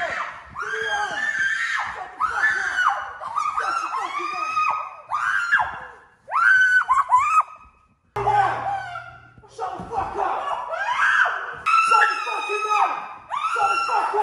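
A woman screaming in distress again and again: long, high, wavering cries with short breaks between them.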